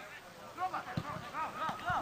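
Quiet voices talking in the background, with one faint knock about halfway through.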